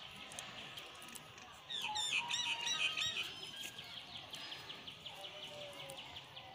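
Birds chirping steadily, with a louder burst of warbling song from about two to three seconds in.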